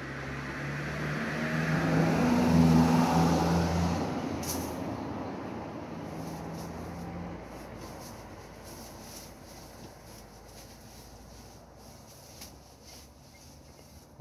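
A motor vehicle passing by, its engine hum and road noise swelling to loudest about three seconds in and then fading away over the next few seconds.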